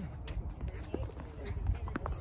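A ball being hit back and forth in a doubles rally: a few sharp knocks of racket on ball and ball bouncing on the hard court, the loudest near the end, over a low steady rumble.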